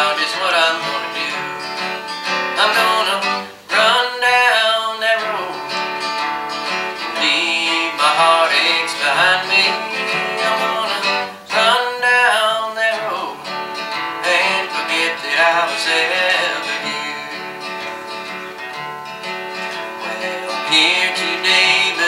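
Live country gospel song: a man singing over a strummed acoustic guitar, with an upright bass underneath.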